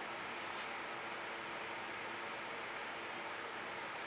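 Faint, steady background hiss with no distinct sound events.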